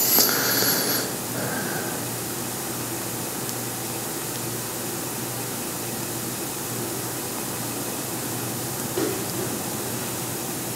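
Steady room hiss with a low hum, with a brief high, wavering sound in the first second.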